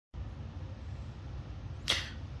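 Steady low room hum, with one brief sharp noise just before the end.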